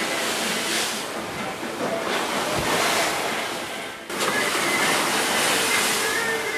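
Rough sea washing against a moving boat and its wake churning, with wind on the microphone; the noise swells and falls in surges, with a brief drop and a sudden return about four seconds in.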